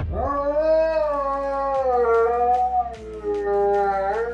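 A dog howling in long, held notes that waver slowly in pitch, with a short break about three seconds in.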